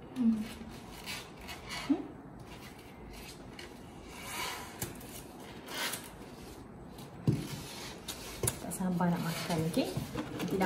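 Quiet handling noises of a whole boiled king crab being turned over in the hands: a couple of soft rustles in the middle and two sharp clicks. There are short vocal sounds in the first two seconds, and a woman starts talking near the end.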